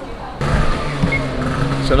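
Street noise that changes abruptly about half a second in to a steady low hum, with a man starting to speak near the end.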